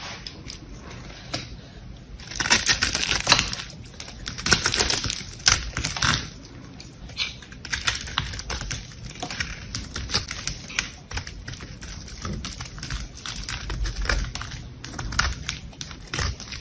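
A small knife blade cutting into a crumbly bar of soap, with dense crisp crackling and clicking as flakes and chunks break away. The crackling is loudest in a few clusters a few seconds in, then carries on more lightly.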